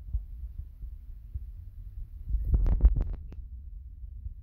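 Low rumbling thumps of handling noise on a phone's microphone, with a quick run of five or six clicks and knocks about two and a half to three and a half seconds in, the loudest part.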